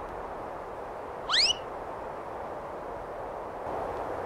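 A single short whistle swooping sharply upward, about a second in, over a steady background hiss.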